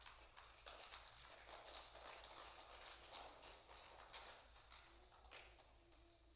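Near silence in a large room, with faint scattered clicks and soft rustling that thin out near the end.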